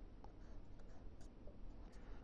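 Marker pen writing on a sheet of paper, faint strokes.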